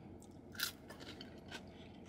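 Faint chewing of salted french fries, with a few soft crunches, the loudest about half a second in.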